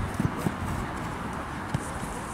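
A few dull knocks of a football being played on a grass pitch, over steady low background noise.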